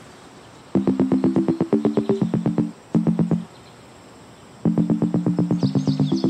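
Electronic outro music: quick runs of short, repeated chords, several a second. It comes in just under a second in, drops out for about a second midway, then resumes, with a high twittering figure joining near the end.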